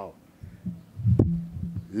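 A man's low wordless hum between spoken phrases, with a soft low thump about a second in.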